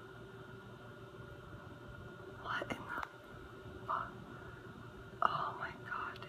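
A person whispering a few short words, about halfway through and again near the end, over a faint steady hum.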